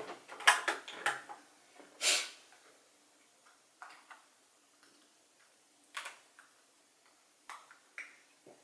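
Makeup compact and brush being handled: a quick run of small plastic clicks and knocks, loudest in the first second, a short hiss about two seconds in, then a few fainter taps.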